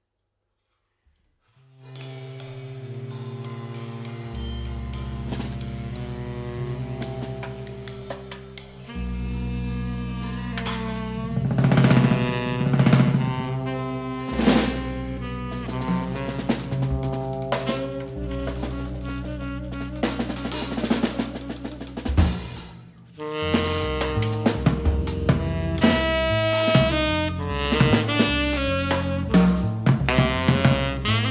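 Free-jazz drum kit and electric bass starting about two seconds in: the bass holds long low notes that change every few seconds under scattered drum rolls, snare and cymbal strikes. After a brief break about 22 seconds in, bass and drums move into a quicker, more rhythmic passage.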